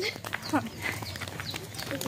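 Faint, broken snatches of voices with a few short clicks, in a lull between louder speech.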